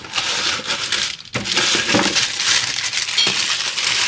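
Plastic packaging crinkling and rustling as a wrapped part is pulled out of a cardboard box, a dense run of crackles with a short break a little after a second in.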